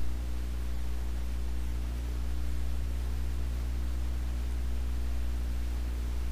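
Steady low hum with several even tones held unchanged, like a motor or engine running at a constant speed.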